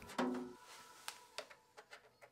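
Mostly quiet, with a brief low hum shortly after the start and then a few faint, scattered clicks, as from parts being handled during machine assembly.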